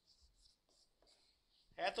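Marker pen writing on a whiteboard: a few faint, short strokes as a letter and a bracket are drawn.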